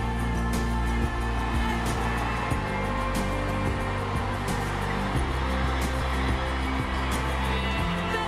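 Live band playing an instrumental passage with no vocals: held chords and bass, and a drum hit about every second and a half, over a steady wash of crowd noise.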